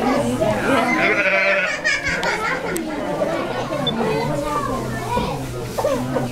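Sheep bleating in a barn pen, with a pitched call about a second in, over several people's voices talking and laughing.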